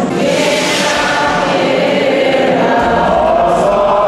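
Church choir and congregation singing a liturgical hymn together, the voices holding long notes.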